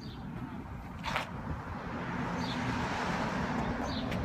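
Outdoor street noise that swells over the last two seconds, with a single knock about a second in.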